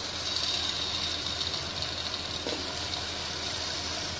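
A curry sizzling in an aluminium pot, with a heap of fresh leafy greens just added on top: a steady, even hiss.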